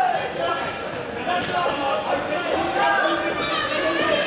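Several people shouting in a large echoing hall during a kickboxing bout, with one sharp impact, such as a strike landing, about one and a half seconds in.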